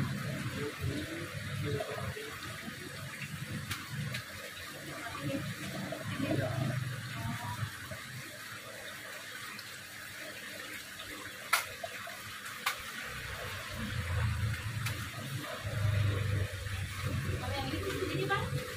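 Steady running and splashing of aquarium water from the tank's filter circulation, with two sharp clicks about two-thirds of the way through.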